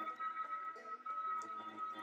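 Electric LEM Big Bite #8 meat grinder running with a steady whine while venison feeds through its coarse plate, under background music.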